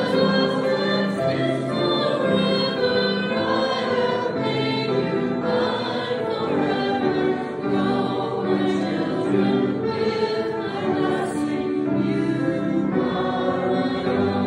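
A hymn sung by a congregation, in held notes at a slow, steady pace.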